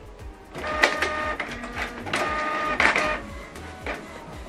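Canon PIXMA MG3600-series inkjet printer starting a print job, its motors whirring in two stretches of about a second each, the first beginning about half a second in.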